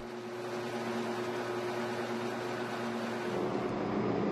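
Electric cacao grinder running with a steady motor hum as it grinds cacao nibs into paste; the hum's tone shifts slightly about three seconds in.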